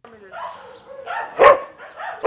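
A dog barking, with one loud bark about a second and a half in after fainter sounds.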